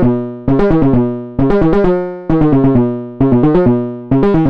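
Synthesizer sequence played through a Barton Musical Circuits BMC114 diode break waveshaper module: a run of quick buzzy notes starts about every second, each run fading away before the next.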